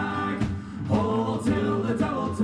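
Male voices singing a sea shanty in group harmony, a shouted call-and-response chorus line, with banjo, acoustic guitar and upright bass playing underneath.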